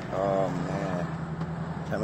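A car moving slowly, with a steady low engine hum. Under it, a man's voice makes two short vocal sounds about a second long, and speech begins at the very end.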